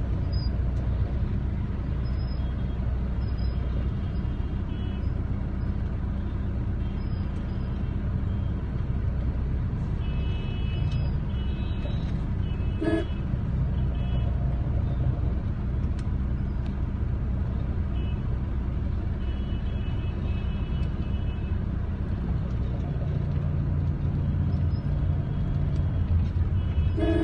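Busy road traffic: a steady low engine and road rumble, with short horn toots sounding again and again, one of them deeper and louder about halfway through.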